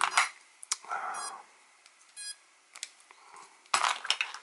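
Hands handling small plastic RC radio gear on a workbench: scattered light clicks and knocks, a soft rustle, and a louder clatter near the end. Two very short high tones sound about a second apart.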